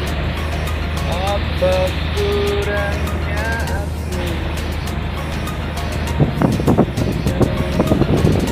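Fishing boat's engine running with a steady low drone, with a voice rising and falling over it in the first half and a short cluster of knocks about six to seven seconds in.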